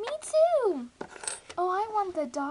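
A girl's high-pitched voice making drawn-out, wordless exclamations whose pitch slides down, with a light click about halfway through as small plastic toy figures are handled on a table.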